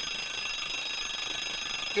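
Mechanical alarm clock ringing continuously, a steady high-pitched bell ring.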